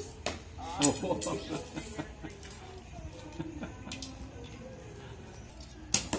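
People talking in the background, broken by several sharp clicks and knocks, the loudest just under a second in and another at the very end.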